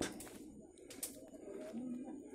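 Faint outdoor sounds: a bird calling softly, with two light clicks, one at the start and one about a second in.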